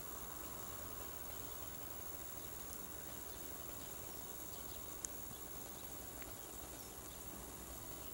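Quiet outdoor ambience: a steady faint hiss with a few brief, high chirps, the clearest about five seconds in.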